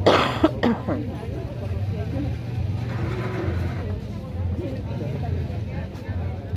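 A man coughing, a harsh cough right at the start and a shorter second one about half a second later. Faint voices and a steady low hum follow.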